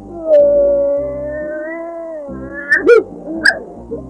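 A cartoon dog's long, drawn-out whine, held at a fairly even pitch for about two seconds, then a few short high squeaks, over background music.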